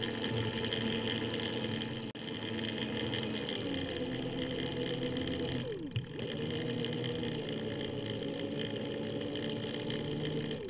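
Electric assist motor on a recumbent trike whining steadily while riding. A little before six seconds in, the whine drops away in a quick downward glide, then picks up again.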